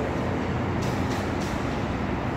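Steady traffic noise: an even, pitchless rumble and hiss, with a few faint swishes.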